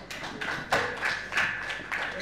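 Scattered applause from a small audience: a quick, uneven run of separate hand claps.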